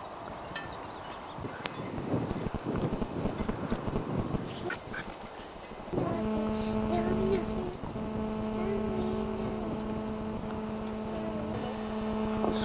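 Outdoor rustling and wind noise on the microphone, then from about halfway a steady, pitched motor hum with a few wavering tones over it, which carries on.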